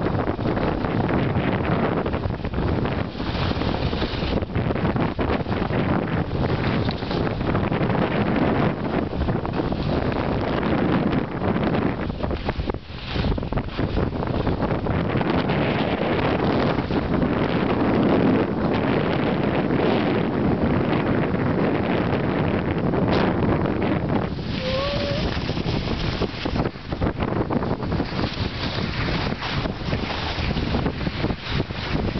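Loud wind rushing over the camera microphone of a moving skier, mixed with the hiss and scrape of skis sliding and carving on packed snow, with a couple of brief lulls.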